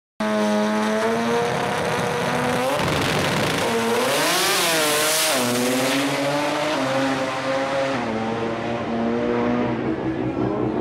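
Drag-racing car's engine running hard through a quarter-mile pass. It starts abruptly, holds a steady pitch, then its pitch dips and climbs back twice in the middle, with the loudest, harshest stretch about four to six seconds in.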